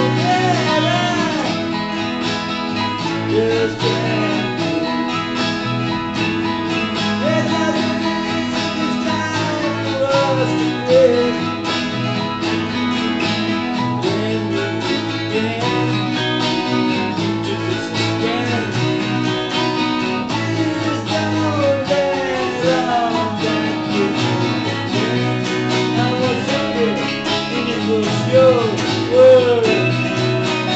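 Hollow-body electric guitar with a capo, played steadily as an instrumental passage of a song.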